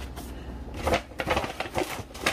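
A plastic shopping bag rustling and crinkling as it is handled, in a few irregular bursts.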